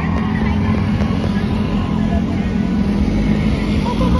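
Loud, steady traffic engine noise: cars and a motor scooter running past on the road, with a constant low rumble and hum.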